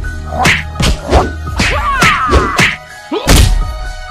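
A quick series of fight sound effects, about seven punch and whack hits with swishes, the heaviest a little after three seconds in, over background music.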